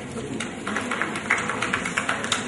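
Background noise of a seated audience in a large hall, with scattered light clicks and taps at irregular moments.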